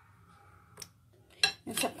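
Mostly quiet, with a faint click and then, about a second and a half in, one sharp clink at a glass bowl as whole baby onions are tipped into it from a plate. A woman's voice starts just before the end.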